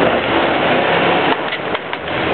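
Dodge Ram 2500 pickup's engine running under load as the truck crawls through mud and snow, with a few short knocks about a second and a half in.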